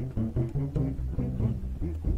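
Live acoustic music: a double bass plucked in a low, continuous line under a run of short plucked notes from a small lute.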